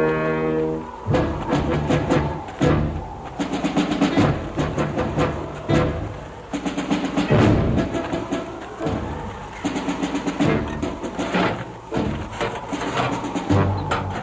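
Dramatic orchestral score with brass and percussion. A held brass chord ends about a second in, then sharp drum and timpani hits and quick drum figures play under sustained brass notes.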